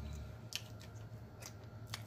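Close-miked chewing of a mouthful of corn dog with the mouth closed, with short wet mouth clicks three times: about half a second in, at a second and a half, and near the end. A low steady hum lies under it.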